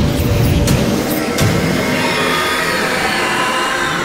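Loud cinematic sound effects over music, a dense roar with heavy low hits in the first second and a half and a layer of higher tones building after about two seconds.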